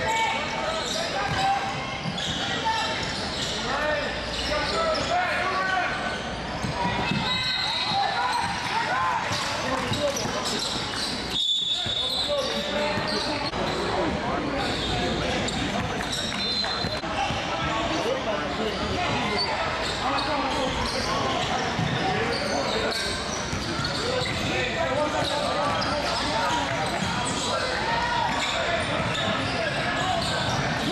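Live sound of a basketball game in a large echoing gym: a steady hubbub of players' and spectators' voices with the ball bouncing on the hardwood and a few short high squeaks. The sound drops out briefly about eleven seconds in.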